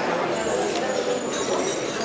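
Breakfast-room hubbub: indistinct chatter of many people, with a few light knocks and clinks of crockery.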